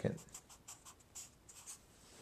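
Black marker pen writing on paper: a run of short, quick scratching strokes as the units of a result are written out.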